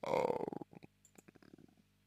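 A short rattly throat sound from a man at the microphone, lasting about half a second, followed by a few faint mouth clicks.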